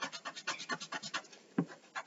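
Graphite pencil sketching on paper: a quick run of short scratchy strokes, about six or seven a second, with one slightly heavier stroke about three-quarters of the way in.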